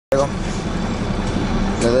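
Steady low rumble of a bus's engine and road noise heard inside the passenger cabin, with a voice briefly at the start and someone speaking near the end.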